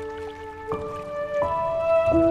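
Slow, gentle piano music: sustained notes ringing on, with new notes played about two-thirds of a second and about one and a half seconds in.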